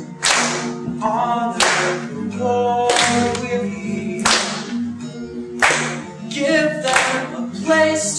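Song with guitar accompaniment: sustained low chords under a singing voice, with a sharp beat about every second and a half.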